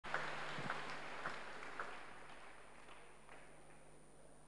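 Applause from a large seated congregation fading out, thinning to a few scattered claps.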